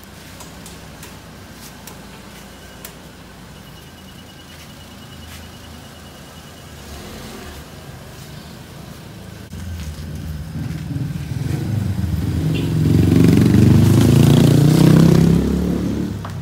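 Peugeot 206 engine running as the car moves off. It grows louder from about nine seconds and is loudest as it passes close by near the end.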